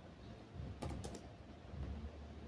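A few quick keystrokes on a computer keyboard about a second in, typing a value into a field.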